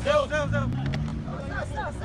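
A crowd of men shouting and calling over a Nissan GT-R's engine revving as it tries to drive out of deep sand, its wheels spinning; the engine note rises briefly about halfway through.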